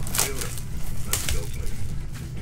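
Hands tearing and crumpling the plastic shrink wrap off a cardboard trading-card box, with crinkling and sharp crackles, loudest just after the start and again about a second in.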